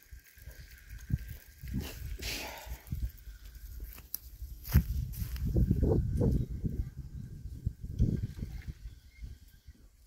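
Irregular low bumps and rustling of close handling noise, busiest in the second half, with a sharp click about five seconds in, as a fishing rod's line is reeled in.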